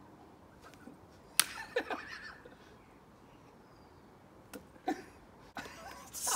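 A sharp, loud slap of one hand on another about one and a half seconds in, followed by brief voice sounds; a second, lighter slap comes near the end, again followed by a short voice sound.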